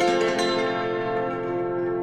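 Cimbalom struck with wrapped hammers: a fast rising run lands on a loud chord, and the notes are left to ring and slowly fade.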